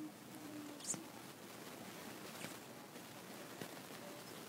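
Faint clicks and rustles from small plastic toys and the camera being handled, over quiet room tone, with a brief faint low hum in the first second.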